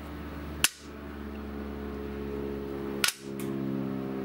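Two sharp clicks, a little over two seconds apart: small round magnets snapping onto a 3 mm plywood board, pulled down by magnets underneath it on the laser cutter's steel bed, to hold the board flat. A steady low machine hum runs underneath.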